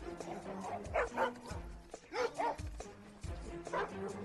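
Dobermanns barking over background music: two quick pairs of barks and a single bark near the end.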